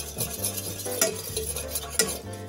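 Fork beating egg yolks in a stainless steel saucepan, the tines clinking lightly and irregularly against the metal as the yolks are stirred.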